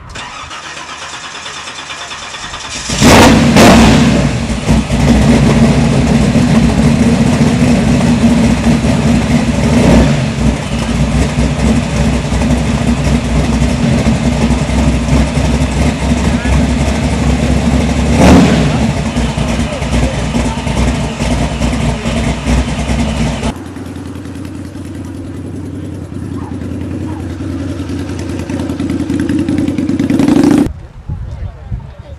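A classic American car's engine starts about three seconds in and then runs steadily, with a couple of brief louder revs. About three-quarters of the way through it drops to a quieter, lighter running sound.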